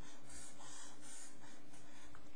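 Felt-tip marker drawn across paper, a steady scratchy rubbing as it outlines a box.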